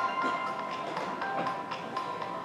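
Background music from a projected presentation video: held tones over a light tapping beat.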